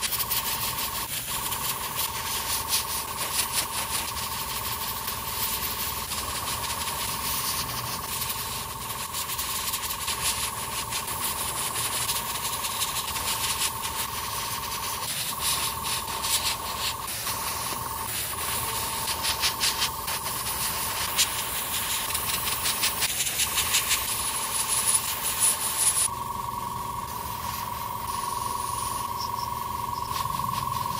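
Gravity-feed airbrush spraying top coat: a hiss of air that swells and eases unevenly as the trigger is worked, over a steady whine. The hiss falls away near the end.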